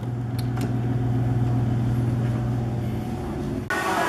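Steady low hum of an elevator, with a couple of faint clicks early on. Near the end it cuts off suddenly into busy lobby ambience with hiss and chatter.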